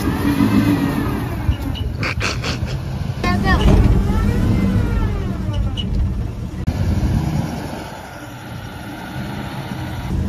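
A 1973 Ford F100's carbureted 302 Windsor V8 revving up and easing off twice as the truck pulls away under throttle.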